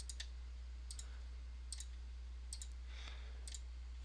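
Faint computer mouse clicks pressing the keys of an on-screen calculator, about eight in all, some in quick pairs, over a steady low hum.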